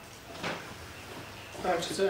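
A pause in speech filled with quiet room tone and one short soft click about half a second in; a man starts speaking near the end.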